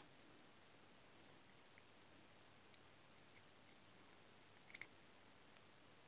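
Near silence with a few faint ticks and a short, sharper double click a little before the end: a plastic bind jumper being pushed onto the pins of an OrangeRx DSMX receiver's bind slot.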